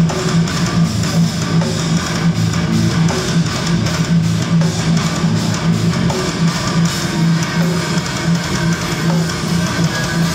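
Metal band playing live: low-tuned eight-string electric guitars play a heavy riff in a choppy, stop-start rhythm over drums.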